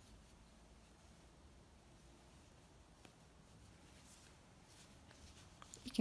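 Near silence: room tone, with a few faint soft rustles of T-shirt yarn being drawn through with a crochet hook.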